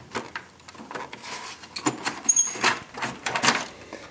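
The plastic cooling shroud of a Dell PowerEdge 1900 server being lifted out of the metal chassis: an irregular run of clicks, knocks and rattles, loudest in the middle and again near the end, with a couple of brief high squeaks about two seconds in.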